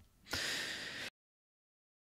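A man's single audible breath into a close microphone, a short hissy sigh lasting under a second, cut off suddenly.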